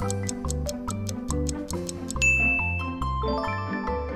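Quiz countdown timer sound effect ticking fast, about five ticks a second, over bright mallet-percussion background music; a little past two seconds in a bell-like ding rings out as the time runs out, followed by a few rising chime notes.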